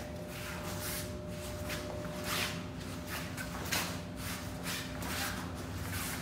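Feet shuffling on foam floor mats and heavy uniform fabric swishing as two martial artists step back through a parrying drill. The swishes are short and come irregularly, about six or seven of them, over a steady low hum.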